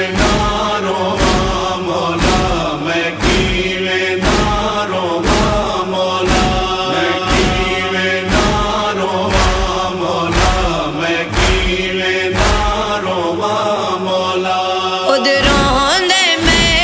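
Instrumental interlude of a noha lament: a chorus of voices chants a held, wordless refrain over a deep thump about once a second that keeps the beat.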